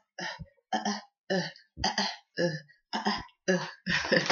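A woman's voice making a run of short, evenly spaced vocal bursts, about two a second.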